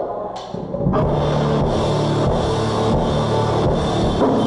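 Rock band playing live: distorted electric guitars, bass and drum kit come in together about a second in and play on at full volume.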